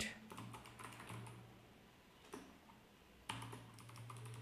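Faint typing on a computer keyboard: a few soft keystrokes in the first second, then single key clicks about halfway through and near the end.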